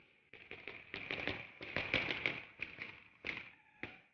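Typewriter keys striking in quick, irregular runs, densest around the middle, with a couple of separate strikes near the end, over a faint steady high whine.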